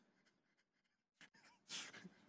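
Near silence: faint room tone with one brief, soft sound near the end.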